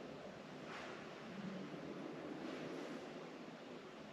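Faint steady ambient hiss inside a rock cave, with two soft rustling swells, one about a second in and one near the three-second mark.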